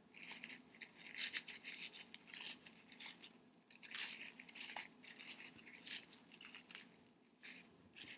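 Faint, irregular rustling and crinkling of thin paper napkin layers being peeled apart and pulled up by hand.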